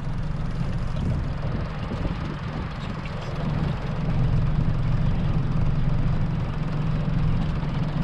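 A 200 hp outboard motor running steadily at low speed, a constant low drone, with water and wind noise around it.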